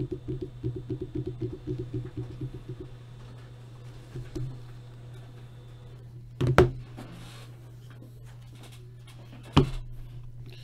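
A printer running with a rapid, even mechanical chatter that stops about three seconds in, over a steady low hum. Two loud knocks come later, about three seconds apart.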